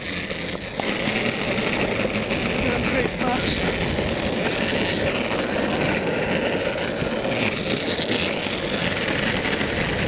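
Skate wheels rolling on the street, a steady rumble that gets louder about a second in and holds.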